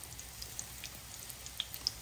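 Breaded meat-stuffed mushrooms frying in hot clarified butter in a pan: a faint sizzle with scattered small crackles and pops.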